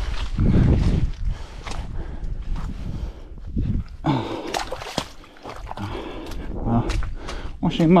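Running shoes squelching and splashing step by step through deep, waterlogged mud and muddy puddles.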